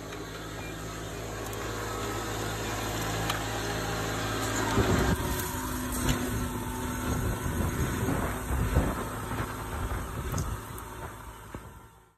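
Tractor-drawn vacuum planter working through crop stubble: a steady engine hum, then from about five seconds in a rougher rumble with irregular knocks and rattles as the row units run over the ground.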